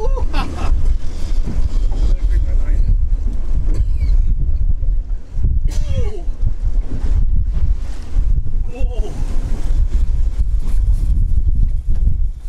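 Heavy wind rumble buffeting the microphone aboard a small open boat, with a few short, faint snatches of voices.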